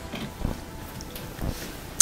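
Soft low knocks and faint rubbing of dryer parts being handled, twice about a second apart.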